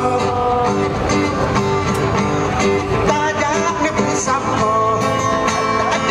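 Live band playing an Acehnese song, with plucked guitar prominent over a full backing at a steady, loud level.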